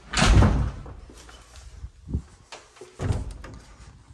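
An interior door being pushed open and handled: a loud thud at the start, followed by two smaller knocks about two and three seconds in.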